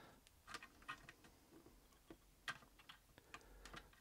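Faint, scattered clicks and taps of plastic model-kit parts: suspension swing arms being pushed and nudged into their sockets in a plastic tank hull by hand.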